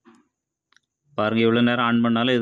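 Near silence with a couple of faint ticks, then a man starts speaking a little over a second in.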